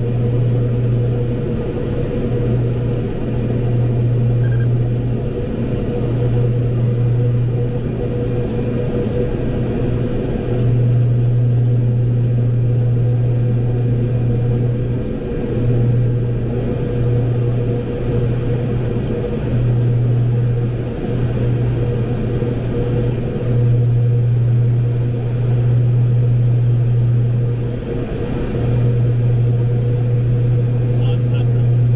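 Fokker 50's turboprop engines and six-bladed propellers heard from the cockpit on final approach: a loud, steady low propeller drone over a haze of airflow noise, dipping slightly every few seconds.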